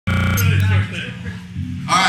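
An amplified electric buzz at the start, then a low amplifier hum fading under a quieter murmur of voices, on a live band's stage between songs.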